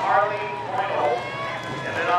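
Voices talking, the words not made out.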